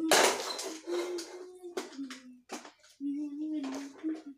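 A child's voice making drawn-out, wordless vocal sounds in short held phrases. A loud clatter comes right at the start.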